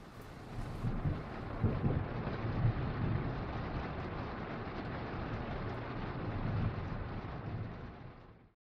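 A low, uneven rumble under a steady hiss, swelling in over the first second and fading out at the end.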